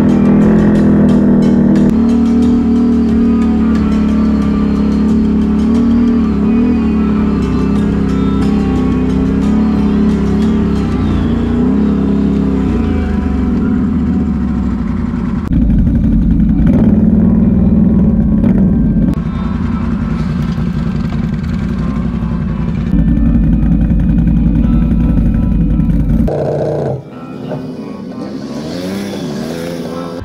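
ATV engines running and revving while riding, with background music laid over them.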